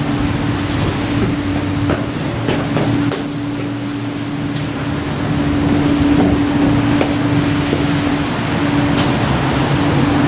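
Steady mechanical hum holding one constant low tone over a low rumble, with a few faint knocks.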